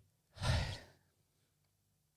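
A man sighing once, a breath out lasting about half a second.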